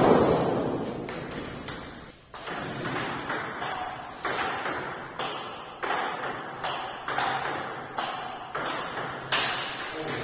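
Table tennis rally: the celluloid ball clicks off paddles and table about twice a second, each hit echoing in a bare hall. The loudest hit comes right at the start, and there is a brief pause about two seconds in before the hits pick up again.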